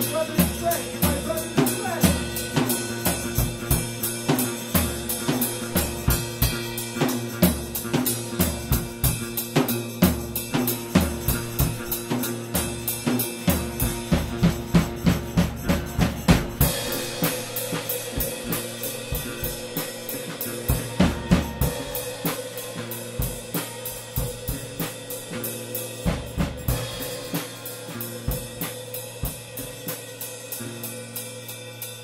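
Improvised rock jam: a drum kit plays a busy, steady beat with snare, kick and cymbals over held guitar and bass notes. The cymbals thin out briefly about halfway through, then return.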